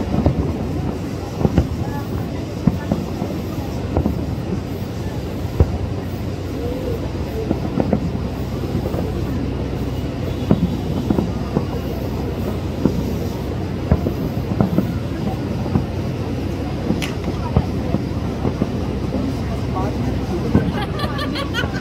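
Fireworks display heard from a distance: a continuous rolling rumble of shell bursts, with sharper bangs every second or so.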